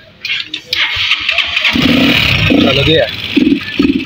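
Motorcycle loader rickshaw's single-cylinder engine being kick-started, a burst of engine noise about a second in, with voices over it.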